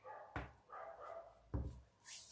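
Two soft thumps about a second apart as small potted succulents are set down on a tabletop, the second the louder.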